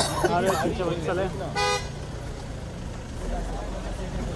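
A single short car horn toot, about a second and a half in, over the steady low hum of a car engine running close by.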